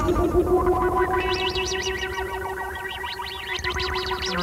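Moog modular synthesizer music: a held, overtone-rich tone with fast repeating high sweeps joining about a second in, thickened by tape delay and echo.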